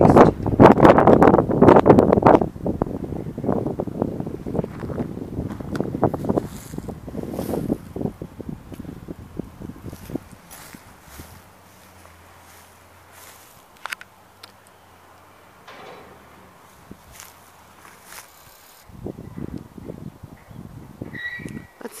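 Footsteps through long grass and brush, with rustling and handling noise. Dense and loud for the first several seconds, fading to faint scattered rustles in the middle, then picking up again near the end.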